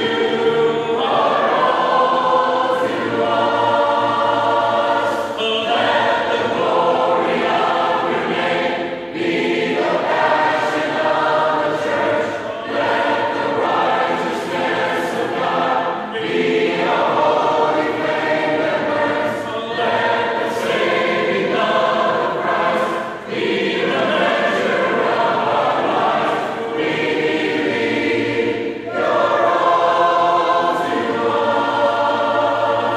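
A choir of many voices singing a worship song in harmony, in phrases a few seconds long, with the words "Jesus, you are all to us", "be a holy flame" and "we believe you're all to us".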